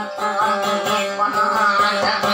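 A woman singing a dayunday song with a wavering, ornamented melody while plucking and strumming an acoustic guitar in a steady rhythm.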